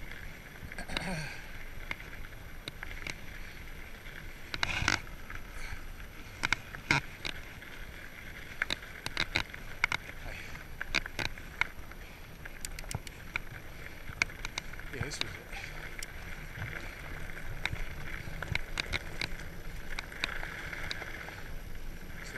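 Salsa Bucksaw full-suspension fat bike rolling over gravel and then a dirt path, a steady tyre hiss with frequent sharp clicks and knocks as the bike rattles over bumps.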